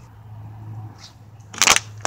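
Handling noise from a phone held in the hand: fingers rubbing and shifting over it, with one short, loud scrape near the end, over a low steady hum.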